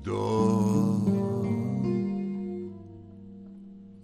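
Final chord of a song on acoustic guitar, struck at the end of the last sung line and left to ring, fading away over a few seconds.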